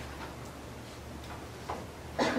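Dry-erase marker on a whiteboard: a few faint, short taps and strokes over a steady low room hum.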